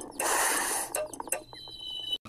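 Cartoon sound effects: a hiss-like burst lasting under a second, a few short clicks, then a high steady whistle-like tone near the end.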